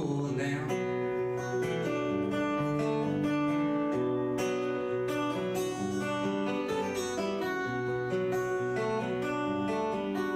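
Solo acoustic guitar picked steadily through an instrumental break in a folk song, its notes ringing on over one another.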